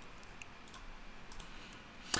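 Quiet room tone with a few faint, sharp clicks.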